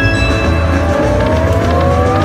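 Buffalo Gold video slot machine playing its free-games bonus music while the reels spin, over a low pulsing beat, with a rising tone sweeping up partway through.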